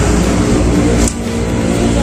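A motor vehicle's engine running, a steady low rumble, with one short click about a second in.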